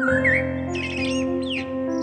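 Eurasian blackbird singing: a fluty phrase gliding around the start, then higher squeaky, twittering notes. The song sits over calm instrumental music with sustained held tones.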